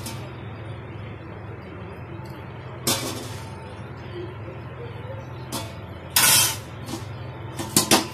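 Water boiling in a wide steel pan on a stove, with a steady low rumble underneath. Several short hissing bursts come through it, the loudest a little after six seconds in.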